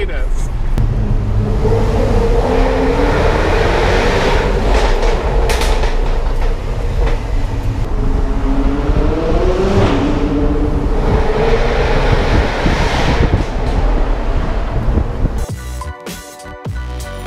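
A car's engine heard from inside the cabin while driving, with road rumble underneath. The revs climb and fall back several times as the car accelerates and eases off.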